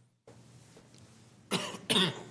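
A person coughing twice in quick succession, loud and close to the microphone, about a second and a half in.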